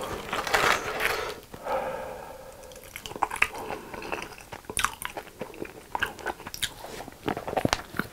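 Close-miked chewing of crunchy food: many sharp crunches and small mouth clicks, densest in the first two seconds.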